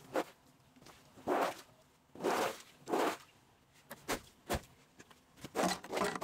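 A series of short rasping scrapes, about seven in six seconds at an uneven pace.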